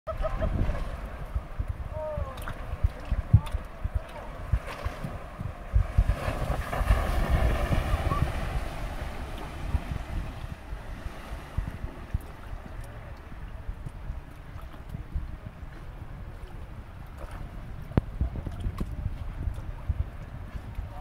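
Wind buffeting the microphone over the steady rush of a fast-flowing river current, louder for a few seconds around the middle.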